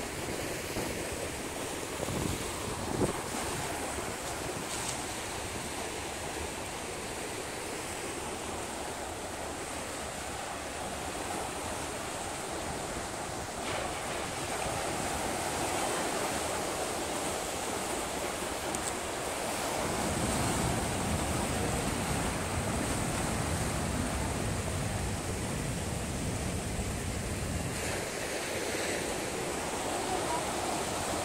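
Ocean surf: small waves breaking and washing in over a rocky shoreline, a steady rush that grows louder and deeper about two-thirds of the way through, with wind on the microphone.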